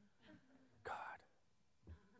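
Near silence with a single soft, breathy spoken exclamation ("God") about a second in.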